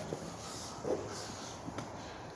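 Quiet outdoor background with faint scuffs and a light click as a child's rubber boots step onto a small board on asphalt: one soft scuff about a second in and a sharp little tap near the end.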